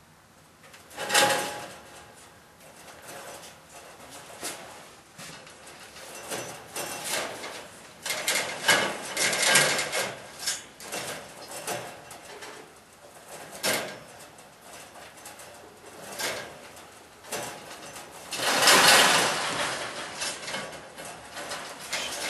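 Rabbits scuffling and shifting about on the wire floor of a hutch during a breeding attempt. The rustles and scrapes come in irregular bursts, loudest about a second in and near the end.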